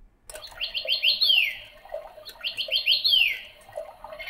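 Electronic chirping-bird toy switching on through its relay: a moment in, it plays two phrases of quick rising chirps, each ending in a falling sweep, over a steady whir.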